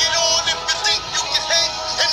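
Soulful hip-hop beat with no rapping: a pitched, sung vocal sample repeating over steady drum hits.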